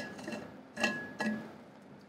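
Insulated stainless steel water bottles and caps clinking as they are handled on a desk: a few light knocks, two of them about a second in, with a short metallic ring.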